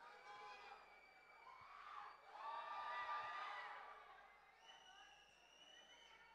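Faint crowd of voices and shouts in a large event hall; near the end a steady held tone starts, the beginning of music.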